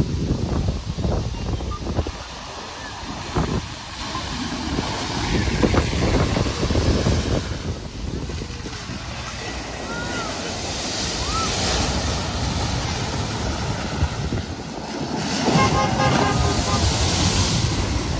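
Cars driving through a flooded ford: the water is pushed aside and thrown up in splashes and spray. It swells loudest about ten seconds in and again near the end, over wind on the microphone.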